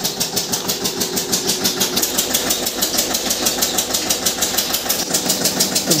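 Stationary diesel engine running a flour mill (atta chakki), with a fast, even beat of several strokes a second.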